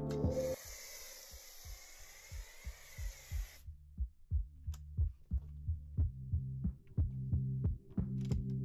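A pressure-washer snow foam lance hissing steadily as it sprays a blanket of foam over a wheel and tyre, cutting off sharply about three and a half seconds in. Background music with a steady pulsing beat plays throughout.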